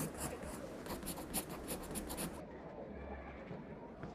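Pencil writing on paper: a quick run of scratchy strokes that stops about two and a half seconds in.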